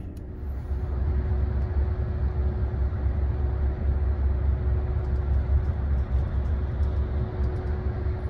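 Inside a coach bus cruising at highway speed: a steady low rumble of engine and road noise with a faint steady hum above it.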